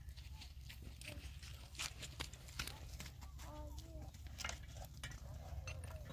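Loose rocks clacking and knocking together as they are picked up and handled from a rock pile, many short sharp knocks. About three and a half seconds in, a short wavering call rises over them.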